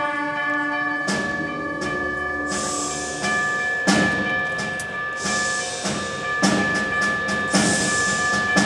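High school concert band playing: a held wind chord, then percussion joining about a second in with loud hits repeating roughly once a second under a sustained high note.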